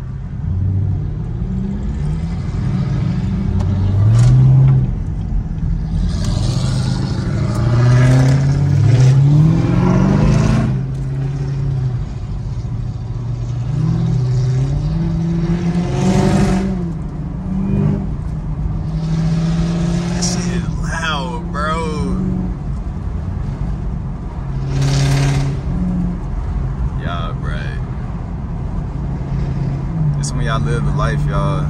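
A rap song playing on the car stereo inside a Camaro ZL1's cabin, with the car's engine accelerating underneath it, climbing in pitch a few times.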